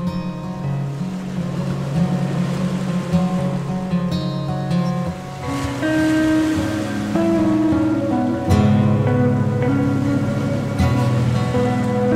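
Instrumental background music with long held notes that change every second or so.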